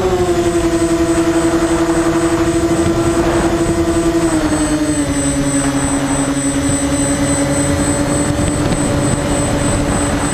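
Twin electric motors and propellers of a Multiplex Twinstar II model plane running in flight, heard from an onboard camera along with wind rush. Their steady drone steps down in pitch just after the start and again about halfway through, over a thin steady high whine.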